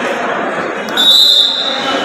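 A referee's whistle blown once, a steady high tone lasting about a second, starting about a second in, over the steady noise of the crowd in the hall.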